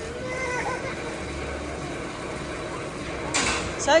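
Young child laughing, with faint wavering squeals early on and a louder burst of laughter with a shaky, rising-and-falling pitch near the end.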